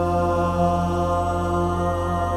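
Unaccompanied voices holding one long sustained chord, steady and without words.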